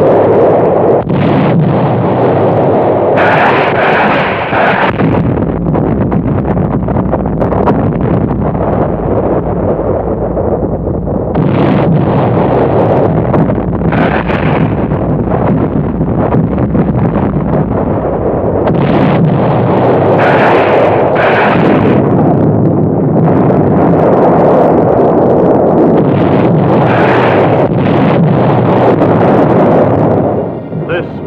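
Battle sound effects of a naval shore bombardment: continuous heavy gunfire and explosions, dense and loud, with louder bursts at intervals.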